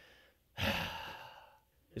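A man's deep audible sigh: one long breathy exhale starting about half a second in and fading away over about a second.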